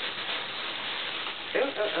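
Shredded paper packing filler and paper wrapping rustling and crinkling as hands dig through a cardboard box, a steady crackle broken near the end by a woman's short "oh, oh".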